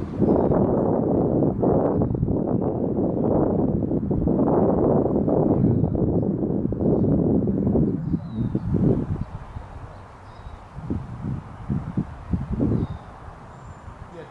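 Wind buffeting the microphone: a loud, uneven low rumble of noise for the first eight seconds or so, then easing into separate shorter gusts.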